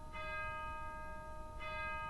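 A bell struck twice, about a second and a half apart, each stroke ringing on over the one before.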